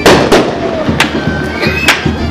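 Four loud, sharp cracks, the first the loudest, over crowd noise, with a high wind instrument playing festival music.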